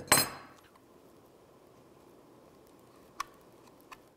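Steel pliers set down with a single sharp metallic clink that rings briefly, followed by faint room tone and one small click about three seconds in.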